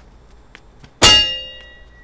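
A single sharp metallic clang about a second in, ringing out with several tones that fade over about a second.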